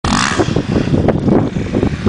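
Dirt bike engine running off in the field, rough and uneven, mixed with wind buffeting the microphone.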